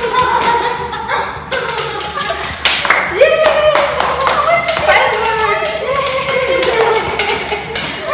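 Popcorn kernels popping in an open pan on a gas stove: many sharp pops in quick, irregular succession.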